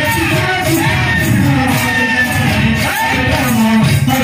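Live kirtan devotional music: singing over a steady percussion beat.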